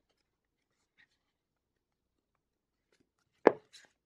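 Handling of a paper sticker book on a desk: near silence, then one sharp tap about three and a half seconds in, followed by brief paper scuffs.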